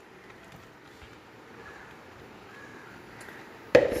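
Dry flattened rice (aval) poured from a plastic bowl into a steel pot of sweet syrup: a faint soft rustle of the flakes. A sharp knock sounds just before the end.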